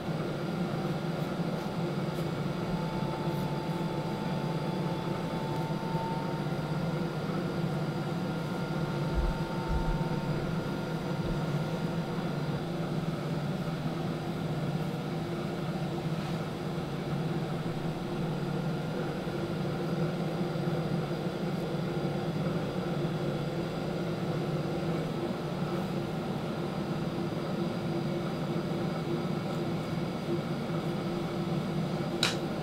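A small electric motor running steadily with a low hum and no break.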